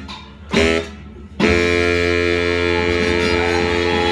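Baritone saxophone playing a short note, then about a second and a half in holding one long, steady final note.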